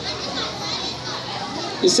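Many children talking and chattering together in the background, a busy murmur of young voices. A man's voice comes back through the microphone near the end.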